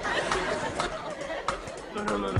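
Indistinct chatter of several voices mixed together, with no clear words and a few sharp clicks.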